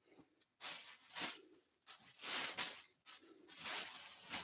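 Rustling of cotton t-shirts being handled, shaken out and pulled from a bag of thrift-store tees, in about five short bursts with pauses between.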